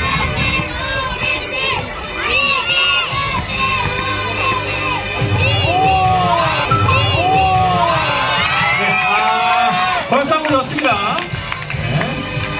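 A crowd of children shouting and cheering, many high voices overlapping at once.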